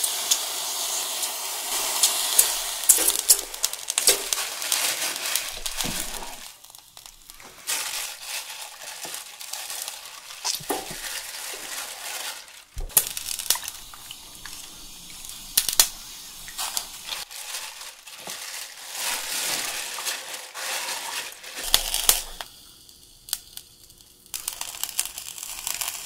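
Live webfoot octopus sizzling and crackling on a hot electric grill's wire rack, with sharp clicks of metal tongs against the grate as the octopus are laid down and pressed.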